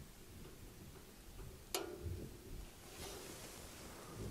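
Quiet room tone with one light, sharp tap nearly two seconds in, as a hand or the clay boat knocks against the plastic tub, followed by a faint hiss.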